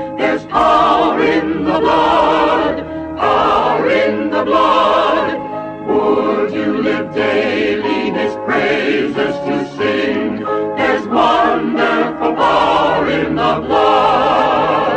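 A choir singing a hymn in phrases a couple of seconds long, with brief breaks between them.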